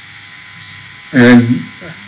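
A man's lecturing voice pausing: a faint steady electrical buzz in the background for about a second, then one short spoken syllable.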